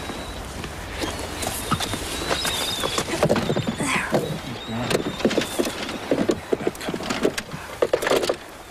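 A wounded river otter squealing and chirping, with thin high whistles in the middle and then a run of short cries; the otter has been shot.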